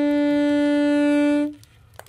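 Music: a single long wind-instrument note held at one steady pitch that stops abruptly about one and a half seconds in, leaving a short quiet gap.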